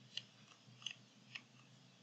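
Three short, sharp computer mouse clicks, spaced about half a second apart, over a faint low hum.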